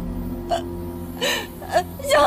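A woman sobbing in short, catching gasps, three times, over a low steady drone of background music.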